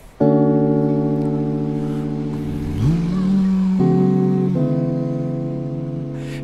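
Electric guitar striking a chord and letting it ring, with a note sliding up in pitch near the middle and two chord changes in the second half: the opening of a slow song.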